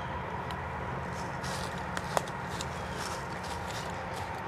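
Steady low rumble of distant highway traffic, with faint, irregular crunches of dry fallen leaves underfoot and one sharper click about two seconds in.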